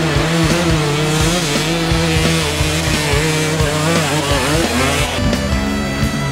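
Dirt bike engine revving hard under load, its pitch rising and falling as it climbs, over rock music. About five seconds in, the engine drops back and the music carries on alone.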